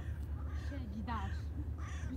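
Gull calling: a few short cries that fall in pitch, the clearest about a second in, over a low steady hum.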